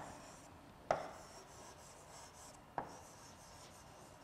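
Pen writing on an interactive touchscreen board: faint rubbing of the tip across the screen, with two sharp taps about two seconds apart.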